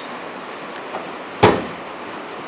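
A steel tool chest drawer closing with a single sharp bang about one and a half seconds in, over a steady room hiss.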